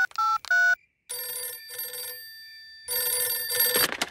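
Three quick push-button phone keypad beeps, each a pair of steady tones, as a number is finished being dialled. Then a telephone bell rings: two short bursts, then a longer, louder one.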